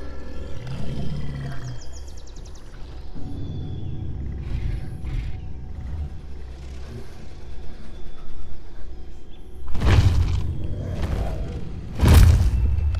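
Monster-movie soundtrack: a low, rumbling suspense score, then a sudden loud burst about ten seconds in that fades over a second or so.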